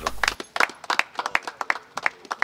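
A small group of people clapping their hands, scattered and uneven rather than a dense ovation.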